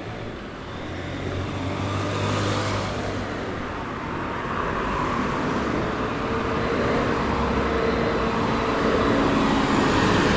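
City street traffic: cars and a motorcycle passing, with a city bus's engine hum growing louder as it draws up close near the end.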